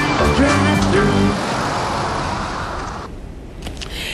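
A car driving away, its road noise fading out over about three seconds, with music over the first second.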